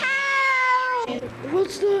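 A single long cat meow, held for about a second and falling slightly in pitch, followed by a voice beginning to speak.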